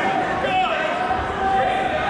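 Several people shouting and calling out indistinctly in an echoing gym, with a thud or two from bodies on the wrestling mats.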